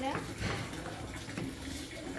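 Faint knife taps from chopping carrots on cutting boards, over a soft steady hiss.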